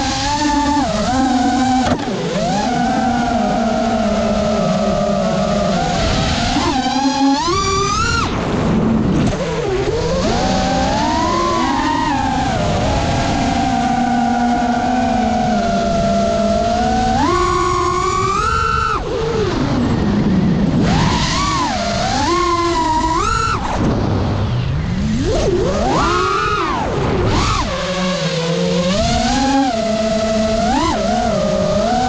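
FPV freestyle quadcopter's brushless motors and propellers whining, the pitch sliding up and down with the throttle, with several sharp climbs as the throttle is punched, over a steady rush of air.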